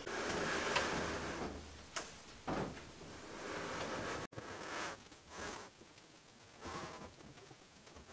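Tall wooden display cabinet being pushed and shuffled across carpet into place: rubbing and creaking in several short stretches, with a knock about two seconds in.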